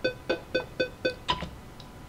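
Cubase software metronome clicking about four times a second, counting the eighth notes of a 7/8 bar at 120 bpm. One click a little over a second in is louder, and the clicking stops soon after.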